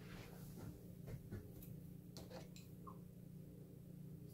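A desktop PC switched on and shutting straight off again: a few faint clicks over a steady low hum. This is the on-off power cycling that the owner takes for a motherboard fault.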